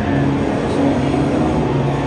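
Amplified electric guitar held on low sustained notes that change pitch a few times, loud over the busy hall.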